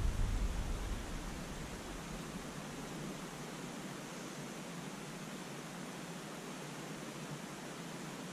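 Steady, even outdoor background hiss with no distinct events, easing down slightly in the first second and then holding level.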